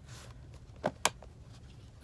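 A short rustle, then two sharp clicks about a fifth of a second apart, the second louder, from a silicone travel squeeze bottle and its plastic cap being handled.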